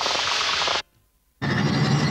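Cartoon sound effect of a spray gun hissing in two bursts, with a short silent gap about a second in; the second burst is fuller and lower.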